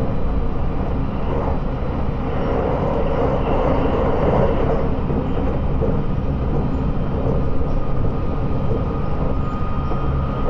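Running noise of a JR 681-series limited-express electric train at speed, heard inside a motor car: a steady loud rumble of wheels on rail. A faint high steady whine joins in near the end.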